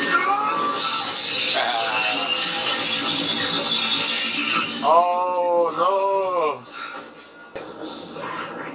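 Television drama soundtrack playing: music over a dense, noisy battle scene, then a loud wavering pitched cry about five seconds in, after which the sound drops away.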